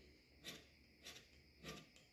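Carbide hand scraper taking three short, faint strokes on a cast iron lathe compound slide, about one every half second. The strokes break up the high spots marked by bluing.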